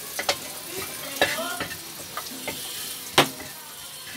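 Cabbage frying in a hot pan with a steady sizzle while a metal spatula stirs it, scraping and knocking against the pan a few times. The sharpest and loudest knock comes a little after three seconds in.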